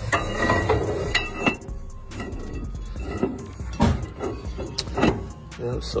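Broken rear axle shaft being slid by hand into the axle housing. The steel shaft knocks and clinks against the housing and brake parts several times, over a low steady hum.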